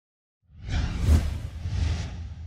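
Logo-reveal sound effect: a whoosh over a deep bass rumble. It swells in about half a second in and is loudest just after a second in.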